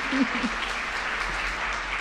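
Audience applauding, a steady, even clapping from a large hall crowd.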